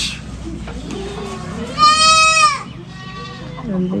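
A goat bleating once, a single drawn-out high call about two seconds in.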